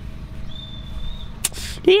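Quiet room tone with a faint thin high tone and a single sharp click, then a man's drawn-out, cheerful "Yay!" near the end.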